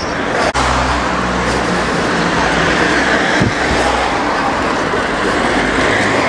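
Road traffic: a motor vehicle's engine running close by, a loud steady rush with a low hum, starting suddenly about half a second in.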